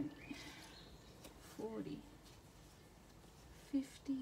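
Faint rustling and handling of paper and banknotes, with a few short, low vocal sounds from the person handling them.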